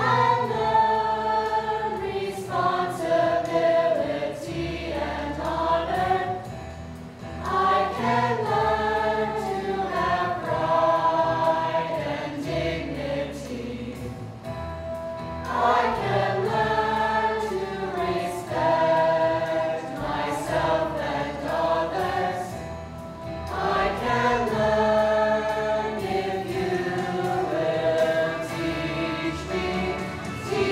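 A school choir of mostly girls' voices singing a song together on stage, in long phrases that swell anew about every eight seconds.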